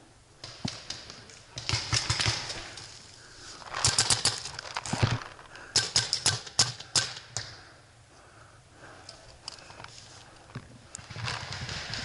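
Paintball markers firing in quick strings of sharp pops, about 2 s in, about 4 s in, and again around 6 to 7 s. Dry leaf litter rustles and crunches underfoot between the shots.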